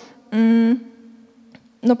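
A woman's held hesitation sound, a flat, steady hum-like filler of about half a second, spoken into a handheld microphone during a pause. A short quiet gap follows, and speech starts again near the end.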